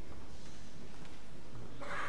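Steady background hiss and low hum of an old VHS recording of an auditorium, with no distinct sound standing out.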